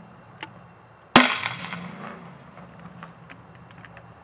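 A single sharp bang from an S-Thunder 40mm gas-charged airsoft grenade shell fired from a grenade launcher to launch a foam ball, about a second in, dying away over about a second. A faint click comes shortly before the shot.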